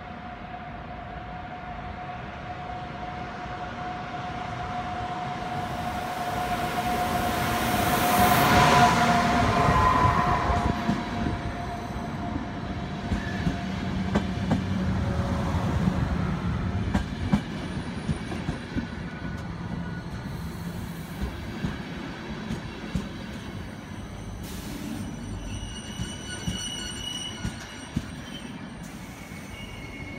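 Electric-hauled ÖBB EuroCity train running into the station. The locomotive passes loudest about nine seconds in, with a steady tone heard through the first half. The coaches then roll by with scattered wheel clicks and high brake squeal in the second half as the train slows.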